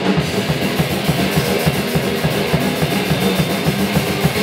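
Hardcore punk band playing live: a fast, steady drum-kit beat under guitar.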